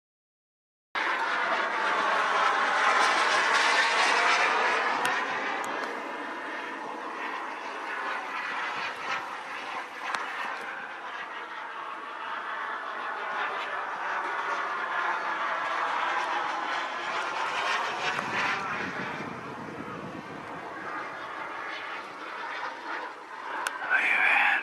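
BVM Ultra Bandit model jet's JetCat P-200 gas turbine heard from the ground as the plane flies past overhead: a loud jet noise with sweeping, phasing tones as it moves. It cuts in suddenly about a second in, is loudest in the first few seconds, then carries on steadier and softer.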